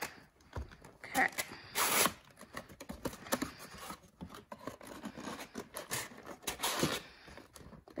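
Cardboard trading-card box being opened by hand: the lid scraping and sliding off, with a louder scrape about two seconds in, then the wrapped packs inside rustling as they are handled.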